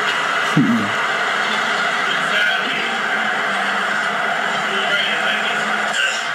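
Soundtrack of an outdoor phone video playing back: a steady noisy wash with indistinct voices, and a short falling cry about half a second in.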